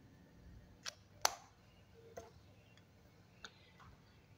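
A few faint, sharp taps spread across a few seconds, the loudest a little over a second in, over quiet room tone.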